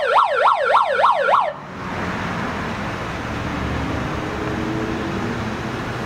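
A siren yelping in rapid up-and-down sweeps, about four a second, that cuts off suddenly about a second and a half in. A steady rushing background noise follows.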